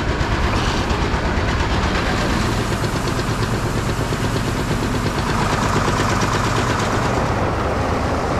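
Grain bin unloading auger running as oats slide down into it: a constant mechanical drone under a steady rushing hiss of moving grain.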